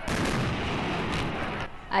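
Fireworks display: a sudden, dense barrage of aerial shells bursting and crackling, with one stronger bang just over a second in, dying away near the end.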